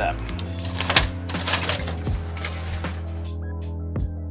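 Hands working damp peat-and-coir potting mix in a stainless steel bowl: crackly rustling with a sharp knock about a second in, over steady background music.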